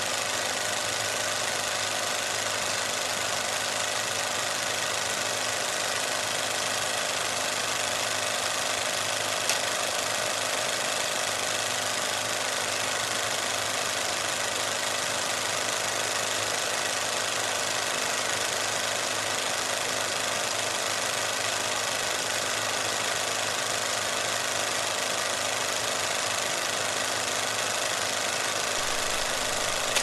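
Steady mechanical running sound with an even clatter, like a film projector, at an unchanging level throughout, with one faint click about nine and a half seconds in.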